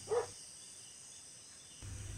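Faint, steady high-pitched ambient background with a low hum coming in near the end, heard in a pause between spoken lines.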